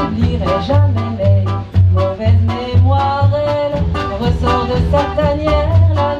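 Live acoustic band playing a swing-style song: double bass sounding strong low notes, acoustic guitar and drums keeping a steady beat, with a melody line over the top.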